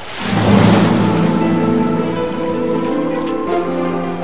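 Logo-intro sound effect: a rushing noise that swells into a loud hit just after the start, then a low chord of several held notes that rings on and slowly fades.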